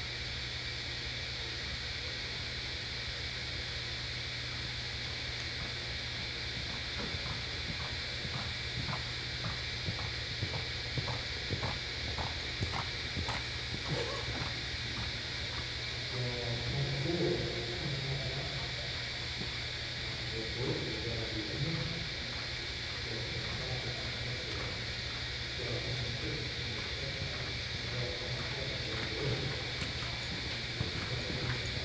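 A reining horse loping on soft arena dirt, its hoofbeats coming about two to three a second for several seconds, over a steady hum of the arena. Faint voices come in during the second half.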